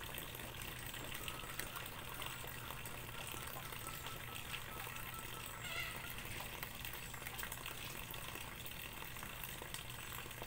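Clothes being handwashed in a metal basin of soapy water: wet fabric rubbed and scrubbed between the hands, with steady small splashes and sloshing.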